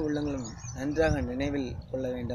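A man speaking, with a low rumble of wind on the microphone.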